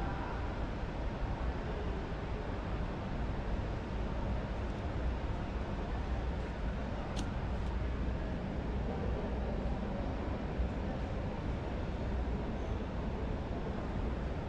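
Steady background hubbub of a busy indoor exhibition hall: indistinct crowd noise over a constant low rumble, with one brief click about seven seconds in.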